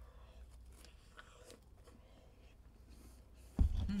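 Quiet chewing of a Hobnob oat biscuit softened by dunking in tea, with faint scattered mouth clicks. Near the end a sudden low thump, then a hummed "mm".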